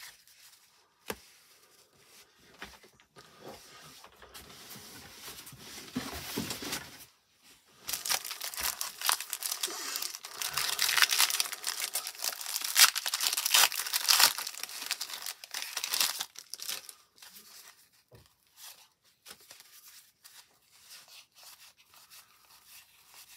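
Clear cellophane wrapper of a 1990 Topps cello pack of baseball cards crinkling and tearing as it is pulled open by hand. The wrapper is loudest and most crackly in the middle stretch, with softer rustling of cards being handled before and after.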